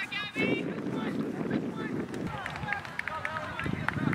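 Live field sound of a girls' soccer match: a player's shout near the start, then scattered short calls from players and sidelines over a steady low rumble, as of wind on the microphone.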